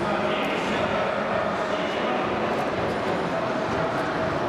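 Steady babble of many distant voices in a large hall, with no single voice standing out.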